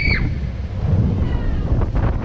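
Wind buffeting the microphone of a camera riding a spinning Break Dance funfair ride, a steady low rumble. A brief high squeal rises and falls right at the start.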